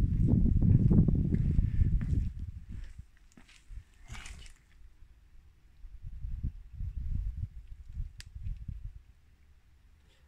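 Handling noise on a handheld camera's microphone, a loud irregular low rumble for about two seconds, then scattered faint thumps of footsteps on a paved floor as the camera is lowered.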